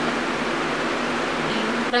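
Box fan running: a steady whoosh of moving air.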